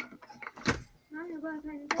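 A man's voice holding a drawn-out hesitation sound, with a couple of short sharp clicks before and after it.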